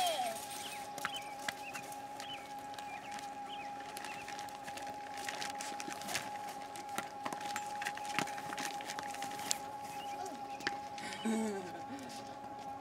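Faint scattered clicks and rustles as a toddler climbs onto a trampoline, over a steady faint high hum; a laugh near the end.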